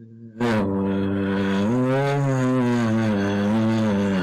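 A man's voice holding one long chanted vowel for about four seconds, its pitch rising slightly in the middle and easing back: a prolonged note of Quran recitation.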